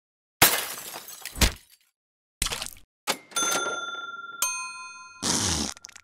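A sequence of crash and breaking-style sound effects: three sudden crashes, then a ringing tone that a sharp click joins with a brighter chord of tones, ending in a short burst of noise.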